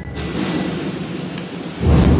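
Deep drums of a procession band rolling and booming in a reverberant church: a rumble dies away, then a loud new roll starts near the end.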